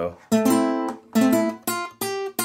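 Acoustic guitar playing a short single-note lick: three plucked notes, each ringing briefly before the next. This is the little run that opens the solo in the song, played on the low frets and open strings.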